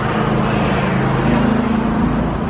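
A motor vehicle driving past on the street: a steady low engine hum with tyre noise, the engine note stepping up a little about halfway through.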